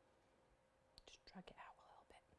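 Near silence: room tone with a faint steady hum, and a brief stretch of faint whispered speech about a second in.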